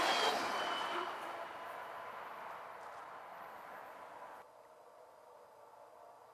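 CSX freight train's wheels rolling on the rails, fading as the last cars move away, with a brief high wheel squeal in the first second. The sound cuts off abruptly about four and a half seconds in, leaving only faint background hiss.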